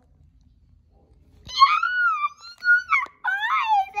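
About a second and a half of near quiet, then a person speaking in a very high, squeaky put-on character voice whose pitch slides up and down, in a few short phrases.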